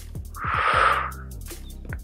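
Background workout music with a steady low beat, and about half a second in, a loud, breathy breath lasting about half a second, taken in time with the dumbbell chest-fly reps.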